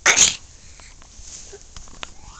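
A baby's face and mouth right against a camera's microphone: one short, loud, noisy burst lasting about a third of a second right at the start, followed by a few faint clicks.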